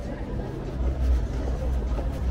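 Night street ambience: a deep low rumble that swells and fades every half second or so, under faint distant voices.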